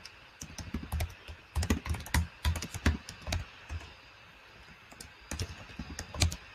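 Typing on a computer keyboard: runs of quick key clicks, pausing for about a second and a half past the middle before more keystrokes near the end.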